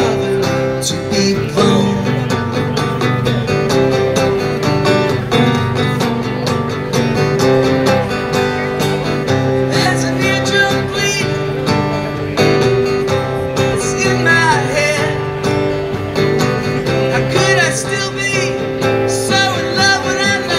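Solo acoustic guitar strummed steadily through an instrumental break in a live song.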